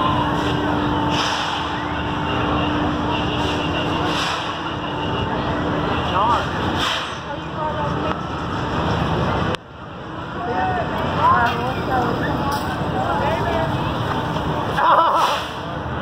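Fairground ambience: a steady hum of ride machinery with a constant low tone, under distant chatter of voices. The sound drops out abruptly for a moment about ten seconds in, and voices get louder near the end.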